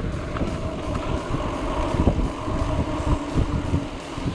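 Mountain bike rolling fast along a concrete road: an uneven low rumble of tyres and frame, with wind on the bike-mounted microphone.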